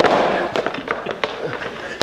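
A sharp crack followed by a fading crackle and hiss that lasts about two seconds.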